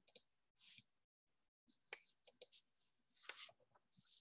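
Faint, scattered computer mouse clicks, a pair near the start and a few more about two seconds in, as slide content is advanced, with soft breaths in between.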